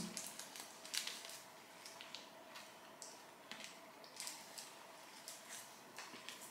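Quiet room with faint, scattered small clicks and mouth sounds of hard sweets being sucked and moved against the teeth, over a faint steady hum.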